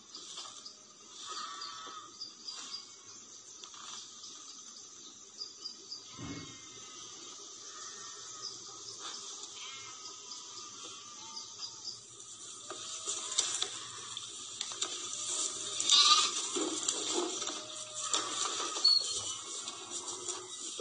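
Livestock bleating several times in short calls, heard through laptop speakers, louder and busier in the second half.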